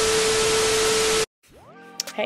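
TV static sound effect for a glitch transition: loud even hiss with a steady mid-pitched tone running through it. It cuts off suddenly about a second and a quarter in.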